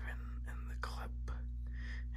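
Soft whispering, with short breathy strokes in the voice, over a steady low electrical hum.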